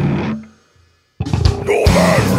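Death metal band with distorted guitars, bass and drum kit: the music dies away about half a second in, stops dead for about half a second, then the full band crashes back in.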